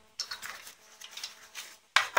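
Power cable and plastic plug adapters being lifted out of a foam-lined box: light clicks and rustling, with a sharper click near the end.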